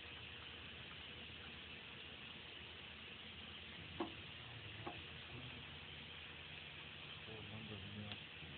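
Steady low hiss with one sharp click about halfway through and a fainter click nearly a second later, as a hand works the controls of a Pistorius VNFA-2 underpinner.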